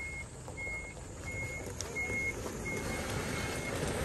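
Heavy truck's reversing alarm beeping at one steady high pitch, about one and a half beeps a second, over the low rumble of the truck backing slowly across loose gravel. The truck is being run over the freshly spread gravel so that its weight packs it down.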